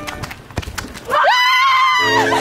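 A single high, drawn-out call beginning about a second in: it rises, holds steady, then wavers at the end. A few light clicks come before it.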